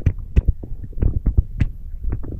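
Wind buffeting the microphone: a loud, uneven low rumble broken by frequent sharp pops.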